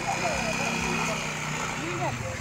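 A steady low engine hum running at an even pitch, with faint distant voices in the background.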